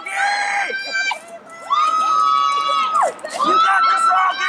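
Spectators shouting high-pitched cheers of encouragement to passing runners. A short yell comes first, then one long held shout of over a second, then more yelling near the end.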